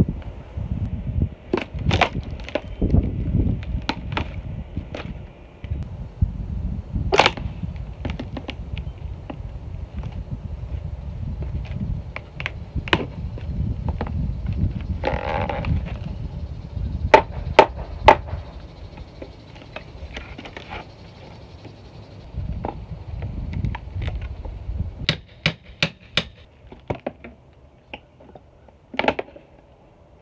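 Rotted wooden window trim boards being pried and pulled loose: repeated sharp cracks, knocks and splintering of wood, with a cluster of louder cracks near the end. A low wind rumble on the microphone runs under most of it.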